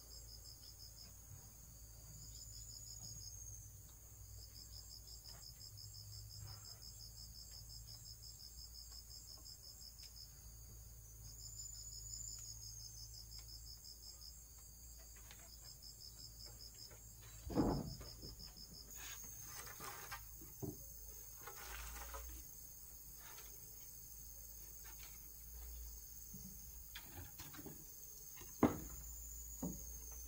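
Insects trilling steadily in a fast, high pulse, with a few knocks of bamboo and wooden poles being handled, the loudest a little past halfway and another near the end.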